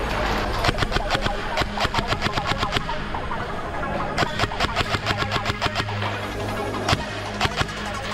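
Airsoft rifle firing two full-auto bursts of about two seconds each, roughly nine shots a second, over background music.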